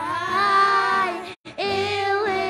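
Children singing a song together into microphones, amplified through the church sound system. The sound cuts out for a moment about one and a half seconds in.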